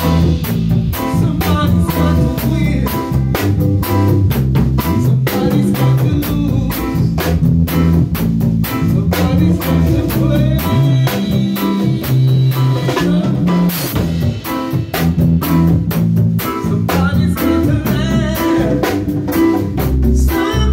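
Live band playing an instrumental jam: drum kit keeping a steady beat under electric bass, keyboard and hand-played congas.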